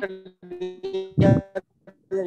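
Garbled voice coming through a video call on a poor connection: the audio freezes into steady, buzzing, organ-like tones in short segments, with a louder burst a little over a second in.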